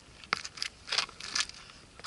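Close handling noise: four or five short scuffs and rustles, spaced over about a second, as the camera and clothing move.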